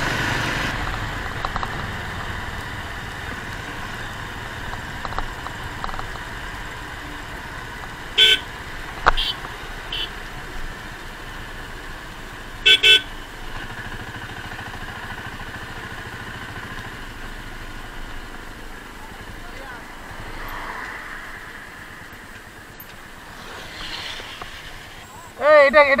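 Motorcycle riding noise, a steady rush of engine and wind that slowly eases, broken by several short horn toots about a third and halfway through.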